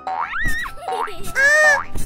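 Cartoon 'boing' sound effect of a trampoline bounce: a springy rising glide with a soft thud, then a second shorter glide. A child's voice exclaims "Aa" near the end.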